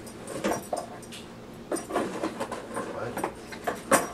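A dog makes short, irregular sounds while searching among cardboard boxes on a carpeted floor, with a sharp knock near the end as the loudest moment.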